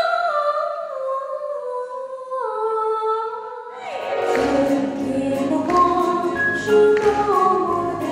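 A woman singing a slow, falling phrase of an old Shanghai-style Mandarin song with little accompaniment beneath her voice. About four seconds in, the sound cuts to another song: her voice over a band with piano, bass and drums keeping a steady beat.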